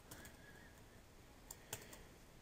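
Faint computer keyboard typing: a few soft keystrokes, mostly about one and a half seconds in, over near silence.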